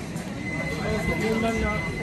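Indistinct voices of people in a shop, with wavering pitched calls, and a steady high thin tone that starts about a quarter of the way in.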